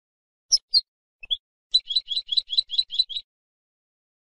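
European goldfinch, the female's chattering calls ("بتبتة"): two short high notes, a brief pause, then a quick run of about eight repeated chirps, about five a second.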